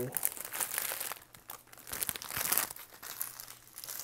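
Foil trading-card pack wrapper crinkling as it is handled, in irregular crackles.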